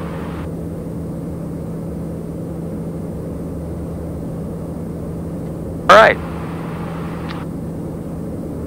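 Steady drone of a TBM 910 turboprop's cabin noise in flight, with a constant low hum, heard inside the cockpit. A single spoken word breaks in about six seconds in.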